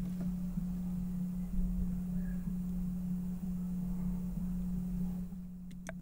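Air conditioner noise in a home vocal recording, played back on its own: a steady low hum. It is the part of the AC rumble lying slightly above a hundred hertz, left after a high-pass filter has removed the deeper rumble.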